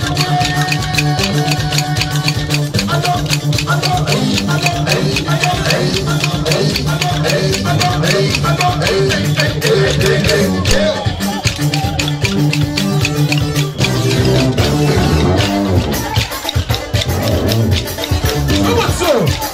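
Live Comorian mbiwi music: many pairs of bamboo sticks clacked together in a fast, steady rhythm over amplified band music with a steady bass line.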